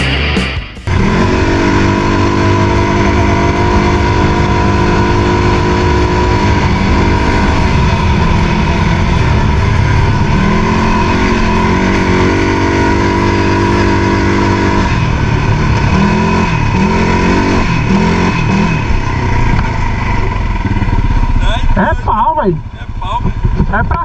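CFMoto ATV engine running under throttle on a dirt trail, heard from the rider's seat, its pitch rising and falling several times as the rider speeds up and eases off.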